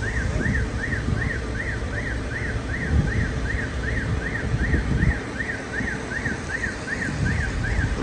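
Electronic alarm sounding a rapid rise-and-fall wail, about two and a half cycles a second, steady throughout, over wind rumble on the microphone.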